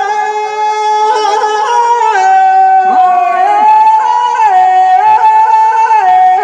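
Male folk singers singing Teja gayan, a Rajasthani devotional folk song, through microphones and a PA. They hold long, high notes that step down and up in pitch, with short ornamented glides between them.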